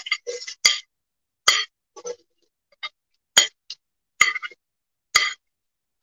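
A metal spoon clinking and scraping against a plate and a pot as chopped onions are tipped into the pot of hot oil: about ten short, irregular clinks.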